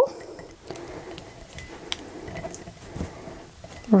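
Faint rustling and rubbing as hands press sublimation paper tight around a mug, with a couple of light ticks.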